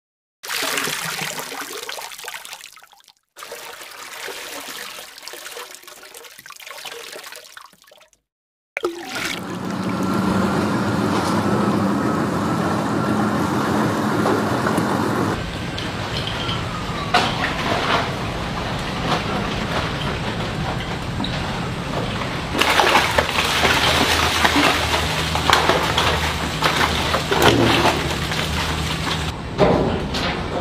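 Water rushing and pouring with machinery humming, from the river-rubbish conveyor belt of The Ocean Cleanup's Interceptor 002 barge. The sound cuts abruptly between several short clips.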